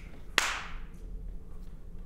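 A single sharp smack about half a second in, with a short echo, over quiet room tone with a low hum.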